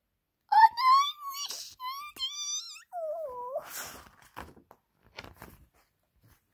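A child's high-pitched wailing voice: two long squealing cries that waver in pitch, then a shorter, lower, falling moan. After them come a short rustle and a few faint clicks of handling.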